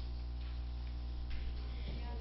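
Classroom room tone: a steady low electrical hum, with a couple of faint taps partway through.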